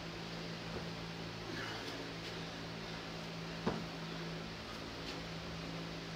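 Steady low mechanical hum of a room fan or air-conditioning unit, with one sharp thud a little past halfway as a foot lands during a lunge on the gym floor.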